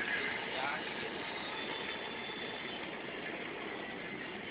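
Steady road and engine noise inside a moving van.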